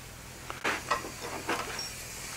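A few faint, light clicks and knocks of metal tools being handled, over quiet shop room noise.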